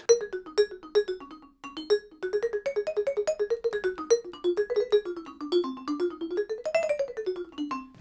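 Musser vibraphone played as a fast single-note melody with yarn mallets, using the two inside mallets of a four-mallet grip. After a short pause about a second and a half in, a steady stream of notes climbs to a high point near the end and then falls back.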